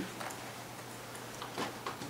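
Room tone in a pause between words: a faint steady low hum with a few faint short clicks, one about a third of a second in and two near the end.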